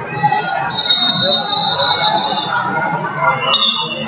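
Crowd chatter echoing in a large gym hall, with a long high whistle about a second in and a short high whistle just before the end: referees' whistles, the later one starting the wrestling bout.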